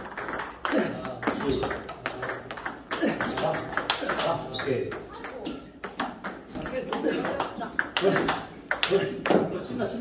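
Table tennis multiball drill: celluloid-type plastic balls clicking sharply off the table and rubber-faced paddles in quick, irregular succession as backspin balls are fed and driven back.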